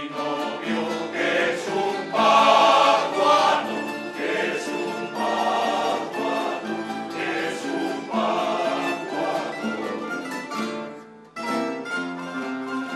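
A male choir singing with a rondalla of guitars and other plucked string instruments, in a Spanish folk song; the music stops briefly near the end, then the instruments start again.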